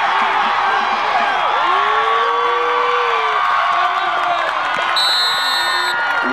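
Football crowd cheering and yelling as a ball carrier breaks away on a long run, with one long held shout a couple of seconds in. Near the end a referee's whistle blows once for about a second.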